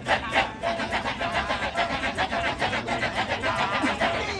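Kecak chant: a large chorus of men chanting "cak" in fast interlocking rhythm, a quick even pulse of sharp syllables at about six a second.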